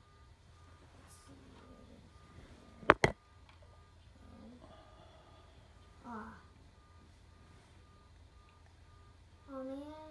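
Two sharp clicks of plastic LEGO parts about three seconds in as the model's clock hands are set by hand, over a faint high electronic beep repeating about three times a second.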